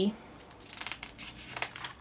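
Glossy magazine pages being turned by hand: a quick run of crisp paper rustles and flicks.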